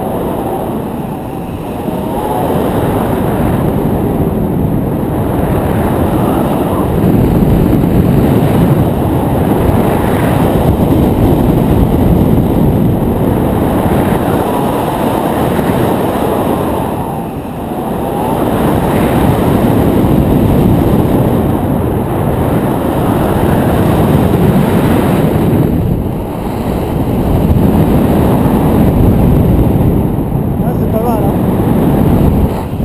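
Airflow rushing and buffeting over the microphone of a camera on a tandem paraglider in flight: a loud, low rumbling rush that swells and eases, dipping briefly twice.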